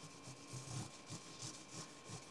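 Cloth rubbed back and forth over a guitar fretboard, faint irregular wiping strokes, a few a second, as dirt is cleaned out of the grain of the wood.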